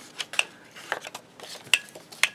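Hard plastic craft paper punches clicking and knocking as they are handled and set down on a cutting mat, with a handful of separate sharp clicks.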